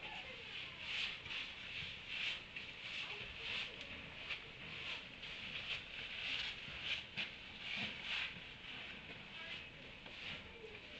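Donkeys feeding at hay piles: a continuous run of short crunching rustles, about two or three a second, as they pull at and chew the hay.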